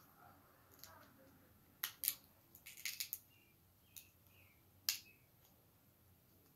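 Snow crab leg shell cracked and snapped apart by hand: sharp cracks about two seconds in, a quick cluster around three seconds, and one more near the end.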